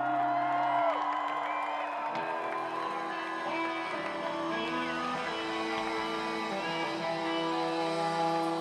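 Rock band playing live, recorded from within the audience: electric guitars and a held note over sustained chords.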